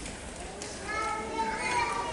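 A young child's high-pitched voice calls out, held for about a second, starting about a second in.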